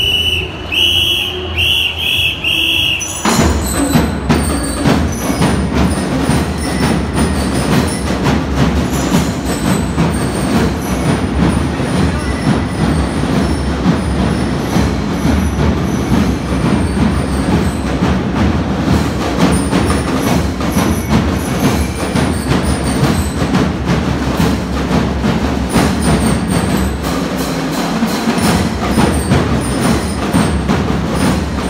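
Marching band music: a few short ringing bell-lyre notes, then from about three seconds in the full band of drums and lyres plays loud and dense, with rapid drumbeats.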